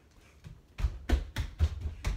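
A child's quick footsteps on a wooden floor, a run of dull thuds about three a second.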